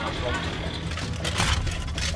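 Metal clanking and scraping of cut corrugated steel shutter slats being pulled away and handled, with a few sharp clanks and a louder scrape about one and a half seconds in, over a low steady rumble.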